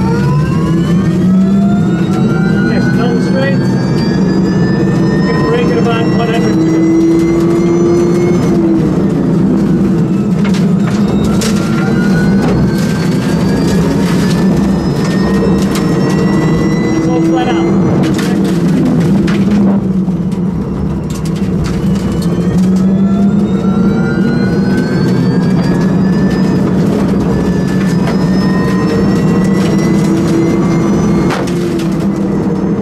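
Nissan Leaf Nismo RC's electric motor and drivetrain whining inside the cabin under hard acceleration. The whine climbs in pitch with speed, drops away under braking, then climbs again, three times over, above a steady rumble of road and tyre noise.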